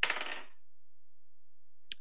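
Dice rolled onto a hard surface: a short clatter of several quick clicks, about half a second long, right at the start.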